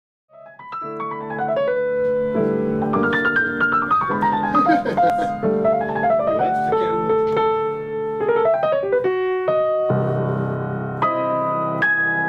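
Solo jazz piano on an acoustic grand piano: quick falling runs of notes over held chords, with a fuller, deeper chord coming in about ten seconds in.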